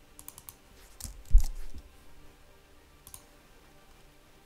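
Computer keyboard keystrokes: a quick cluster of clicks in the first two seconds with a dull low thump among them, the loudest sound, then a single keystroke about three seconds in.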